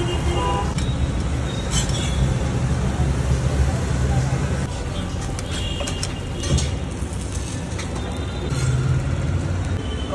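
Street-stall cooking noise: a steady low rumble with background voices, and occasional clinks and scrapes of a metal spatula against cast-iron dosa pans.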